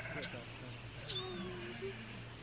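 A young kitten meowing once, a short, high cry that falls in pitch about a second in.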